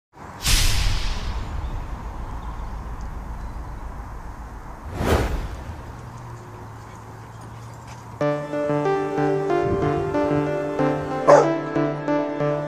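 Background music of held notes starts about eight seconds in, and a Rottweiler barks once over it near the end. Before the music there is a wind-buffeted outdoor recording broken by two sharp bursts.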